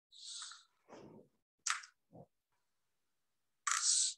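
Scissors snipping through a wooden toothpick: a few short, crisp cutting sounds mixed with soft knocks as the blades and pieces are handled. A louder hissy breath comes near the end.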